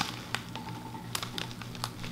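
A few faint, scattered crinkles and clicks from a clear plastic bag of dried herbal facial steam being held up and handled.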